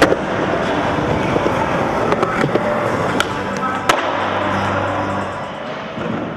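Skateboard wheels rolling on hard ground, with a few sharp clacks of the board: one right at the start and two a little past the middle. Background music plays underneath.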